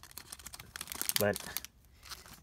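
Thin clear plastic parts bag crinkling as it is handled: a quick, irregular run of crackles and small clicks that dies down near the end.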